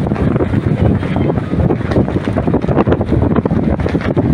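Wind buffeting the microphone: a loud, uneven rumble that rises and falls.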